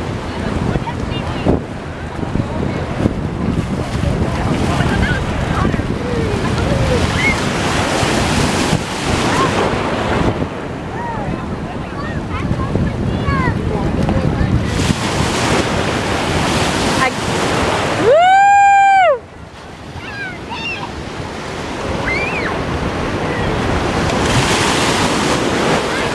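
Sea surf washing and splashing in shallow water, with wind on the microphone and faint voices in the distance. Near the end, a loud high squeal rises and falls for about a second.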